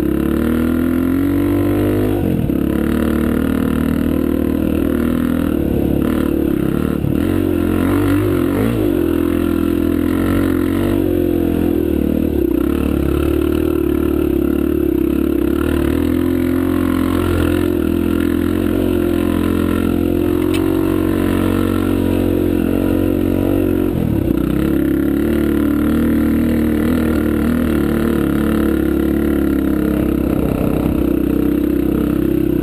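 Dirt bike engine running hard on the trail, its note rising and falling again and again as the rider works the throttle and gears, picked up close from a camera mounted on the bike.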